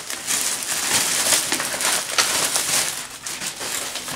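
Clear plastic packaging bag crinkling and rustling in a dense run of small crackles as it is handled open and the packing cubes are pulled out of it.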